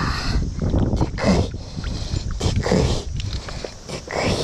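Water splashing and sloshing in a mesh landing net held in a river, as gloved hands handle a live ayu in it. The splashes come in irregular bursts.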